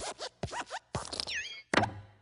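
Cartoon sound effects of the Pixar logo's Luxo Jr. desk lamp hopping on the letter I: a quick run of small thumps and squeaky creaks, then a heavier thump near the end as the lamp squashes the letter flat.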